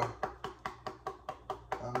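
A black pepper container being knocked rapidly against the hand to shake pepper out, a fast run of sharp taps at about five or six a second.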